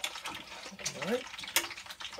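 Chicken frying in hot lard in a deep steel pot: a steady sizzle with a few sharp crackles as tongs stir the pieces.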